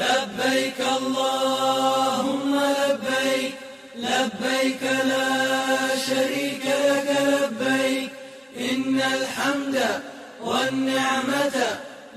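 A voice chanting in long, held phrases, four of them with brief breaks between.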